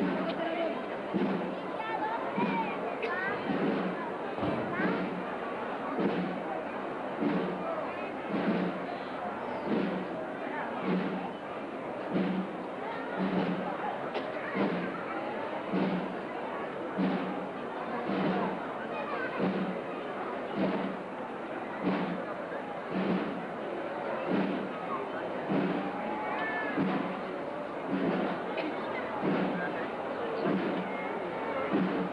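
A procession drum beating a slow, steady march beat, a little over one stroke a second, under the chatter of a street crowd.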